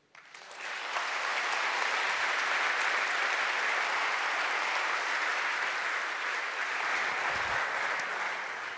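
Audience applauding at the end of a talk: the clapping builds up within the first second, holds steady, then tails off near the end.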